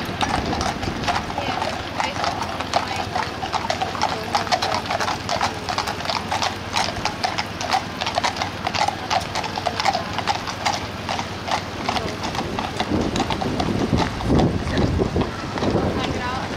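Horses' hooves clip-clopping on a tarmac road in a quick, steady stream as a two-horse carriage and a mounted horse pass.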